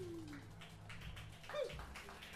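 The end of a live blues-rock song: a last note slides down in pitch and dies away, leaving quiet room noise with a low hum and a few scattered clicks. Near the end comes a short, falling pitched cry.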